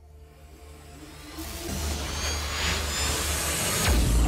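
Intro sting music for a logo animation: a low drone and sustained tones that build into a rising, hissing swell, getting steadily louder and landing on a deep low hit at the end.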